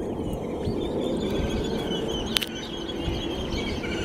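Steady low outdoor rumble with faint bird chirps over it, and a single sharp click a little after two seconds.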